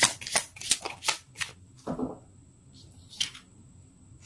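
Tarot cards being shuffled in the hands: a quick run of crisp card slaps, about three a second, that stops about a second and a half in, followed by a couple of softer card sounds.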